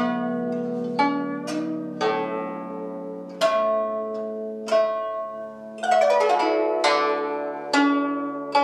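Guzheng played solo: single plucked notes about a second apart, each ringing out and fading, one bending upward in pitch as the string is pressed, and a quick run of notes about six seconds in.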